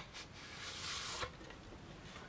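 Faint rustling of a cardboard palette sleeve being handled and turned in the hands, with a light tap right at the start and the rustle fading after about a second.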